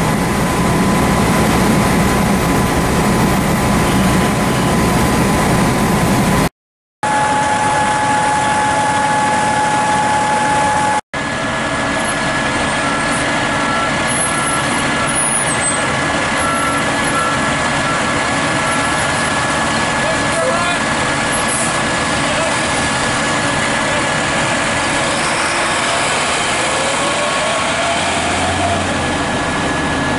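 Diesel engines of parked fire apparatus running at idle close by, a loud, steady drone with faint voices under it.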